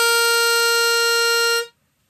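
Chromatic pitch pipe blown to give a single steady B-flat note, the starting pitch for singing the tag. The reedy tone holds evenly, then stops about one and a half seconds in.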